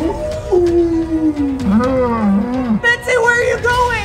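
A cow mooing: one long low moo of about two seconds that slides down in pitch.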